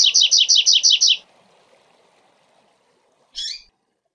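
Double-collared seedeater (coleiro) singing the 'zel zel' part of its tui-tui-zel-zel song: a fast run of repeated high, falling notes, about six a second, that stops about a second in. A single short note follows near the end.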